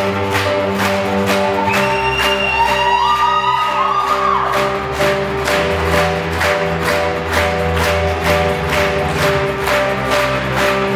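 Nylon-string classical guitar being played, with sustained notes over a steady, evenly spaced beat.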